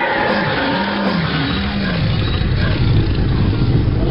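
Car engine revving up and down twice, then running with a steady low rumble, over a constant hiss.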